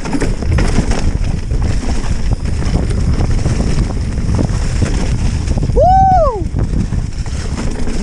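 Mountain bike descending a leaf-covered dirt trail, heard from an on-bike camera: continuous tyre rumble and rattling of the bike, with wind on the microphone. About six seconds in, a short high squeal rises and falls in pitch.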